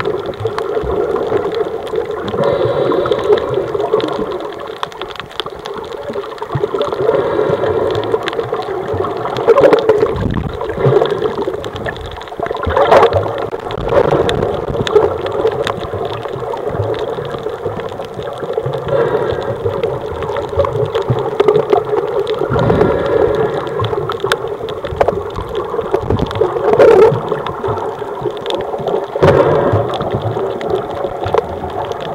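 Muffled underwater water noise picked up by a camera held below the surface: a steady rushing, gurgling wash with surges every few seconds.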